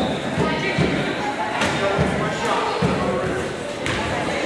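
Voices of spectators and players echoing around a gym, with a basketball bounced on the hardwood floor every second or so and two sharp knocks.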